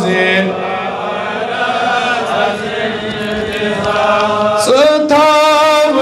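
A man reciting a Kashmiri naat in a melodic chant into a microphone, holding long drawn-out notes. A louder new phrase begins near the end.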